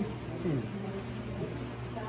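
A steady low hum with an even hiss, with a faint, brief voice about half a second in.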